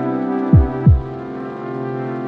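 Lofi hip hop beat: mellow sustained chords with two deep kick-drum hits in quick succession about half a second in.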